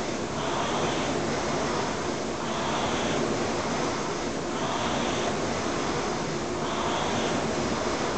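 Concept2 rowing machine's air-resistance flywheel whooshing in a surging rhythm, swelling with each drive stroke about every two seconds, at 29 strokes a minute.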